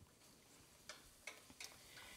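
Near silence, with three faint, light clicks of a kitchen utensil at a sauté pan about a second in.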